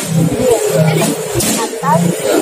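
Human voices making short vocal sounds without clear words.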